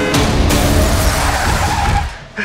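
Loud dramatic music mixed with a car chase: tyres skidding and car engines running hard. The whole mix cuts off suddenly at the end.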